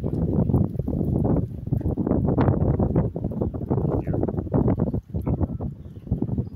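Loud rumbling and crackling noise on the phone's microphone, dense and irregular throughout, easing a little near the end.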